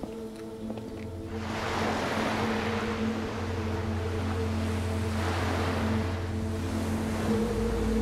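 Sea waves washing onto the shore, starting about a second in and swelling and fading a few times, over held notes of a music score.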